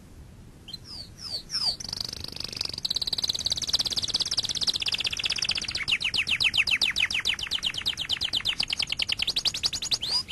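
A bird trilling: a few separate high downward chirps, then a fast continuous trill of repeated descending notes that opens out into distinct chirps, about nine a second, in the second half.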